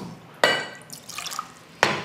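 Whisky being poured into a glass tumbler, with a short ringing clink of glass about half a second in and a sharp tap near the end.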